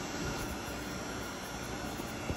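Steady, even rushing noise of machinery running in a woodshop, with no distinct tones or knocks.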